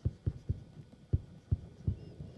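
Stylus tapping and stroking on a writing tablet while a word is handwritten: about six short, dull taps at uneven intervals.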